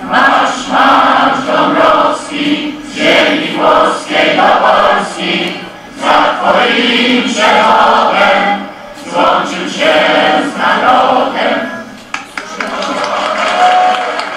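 A large crowd singing together, many voices in unison, in phrases a second or two long with short breaks between them.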